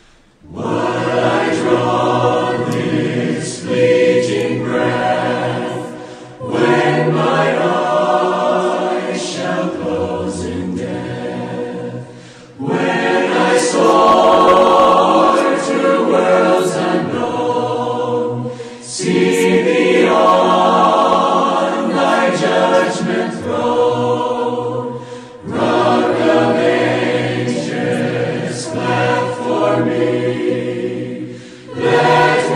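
A choir singing a slow hymn in long phrases of about six seconds each, with a short break between phrases.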